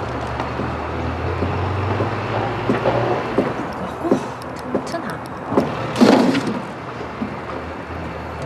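Outdoor street ambience: a low rumble of passing traffic through the first few seconds, with scattered short knocks and brief voice sounds. The loudest of these comes about six seconds in.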